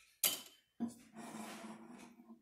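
Utensil and dishes clinking while a slice of cake is served: two sharp knocks about half a second apart, the second followed by about a second of scraping.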